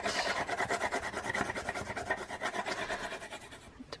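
Multi-coloured pencil scribbling quickly back and forth on absorbent book-page paper glued to a playing card, a fast run of rasping strokes that fades out near the end.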